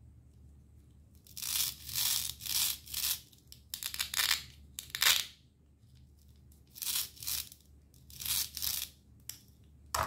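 Hook-and-loop fastener on the two halves of a plastic toy grape bunch ripping and rasping as the halves are worked apart and together: a run of short rips, five in quick succession, a pause around six seconds in, then two more.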